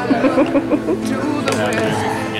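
A man laughing over background music.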